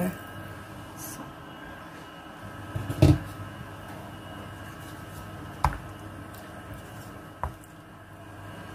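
Kitchen cookware being handled over a steady hum: a heavy clunk about three seconds in, then two lighter knocks later on.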